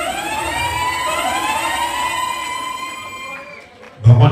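A siren sound effect played through the PA system: a tone that glides upward for about two seconds, holds, then fades out near the end.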